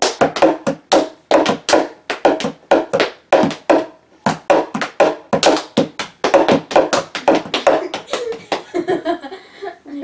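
A fast, uneven run of sharp hand claps, about three to four a second, with brief pauses about a second in and about four seconds in, growing softer near the end.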